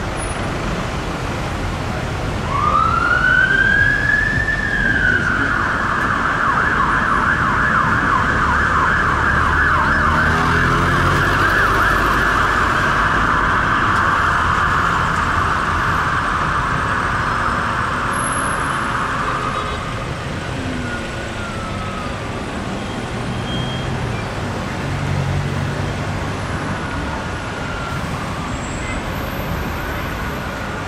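Fire engine siren winding up in a rising wail, then switching to a fast warble that runs for about fifteen seconds before stopping, over steady road traffic.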